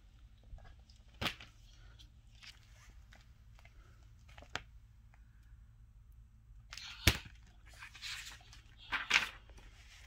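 A paper picture book being handled and held open: page rustling with a few sharp clicks and knocks, the loudest about seven seconds in, and a burst of rustling near the end.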